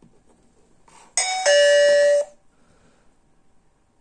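Digoo HAMB PG-107 alarm hub sounding its doorbell chime, set off by a door contact sensor assigned to the doorbell zone. It is a two-tone electronic chime about a second long, with the second note lower and louder.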